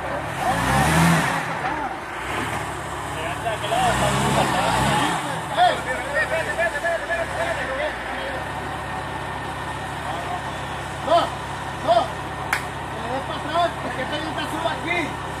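Jeep Wrangler Rubicon's engine revving twice as the Jeep crawls against a tree root, then running steadily at low revs. Scattered voices and a single sharp click near the end.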